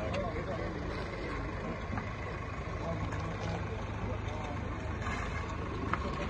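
Ambulance van's engine running low and steady as it pulls slowly out and turns onto the road, with a crowd's voices in the background.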